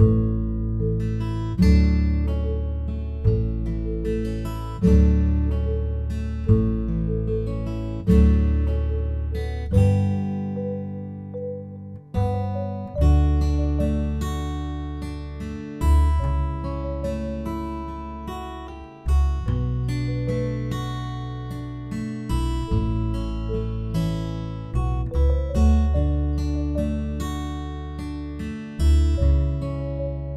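Background music: acoustic guitar, with notes plucked and left to ring, and a new chord struck about every second and a half.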